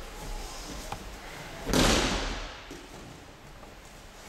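A person hitting the tatami mat in an aikido breakfall: one loud thud and slap about two seconds in that fades over half a second, after a small knock near one second.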